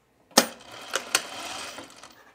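Juki industrial sewing machine stitching a short run along a tuck: a sharp clack about a third of a second in, then about a second and a half of running with two louder clicks, stopping near the end.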